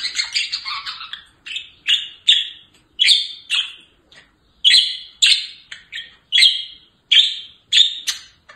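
Pet budgerigars calling: a rapid warbling chatter for about the first second, then a run of short, harsh chirps about two a second with brief gaps between them.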